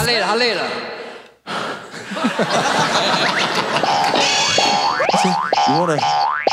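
Talk overlaid with an edited-in comic 'boing' sound effect: a tone that bounces up and down in pitch several times near the start and again near the end. There is a brief break in the sound about a second and a half in.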